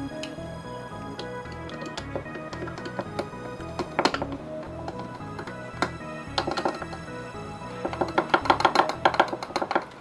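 Background music over sharp clicking taps from a stirring rod crushing a DPD1 tablet in a pool tester's test tube: a few taps about four and six seconds in, then a quick run of them near the end.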